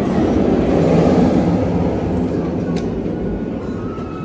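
Rumble of a steel roller coaster train running along its track, swelling about a second in and then fading.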